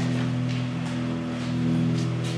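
A steady hum made of several low, unchanging tones. A faint click comes about half a second in.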